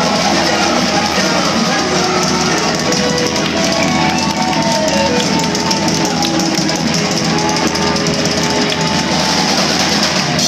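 Live rock band playing a song with electric guitars and a drum kit, loud and continuous.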